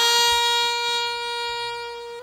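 Saxophone holding one long note that slowly fades, in an instrumental background music line.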